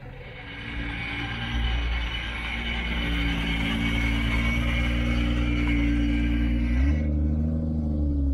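A Mk4 Toyota Supra's engine running at a low, steady speed as the car rolls slowly past, growing louder over the first few seconds. The sound changes abruptly about seven seconds in.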